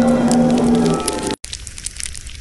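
Edited atomic-breath sound effect: a loud crackling hiss over a steady low hum, cut off sharply about a second and a half in, followed by a thinner stretch of crackling hiss.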